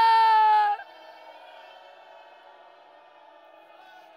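A woman's loud, long, high-pitched wailing cry, held on one pitch and dipping slightly as it cuts off a little under a second in. After it only a faint, steady background remains.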